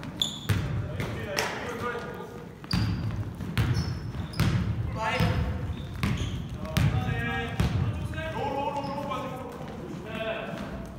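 Basketball bouncing on a hardwood gym floor, a string of sharp thuds, with players' short shouted calls echoing in the large hall.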